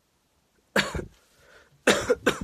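A man coughing: one sharp, loud cough a little under a second in, and a second cough starting near the end.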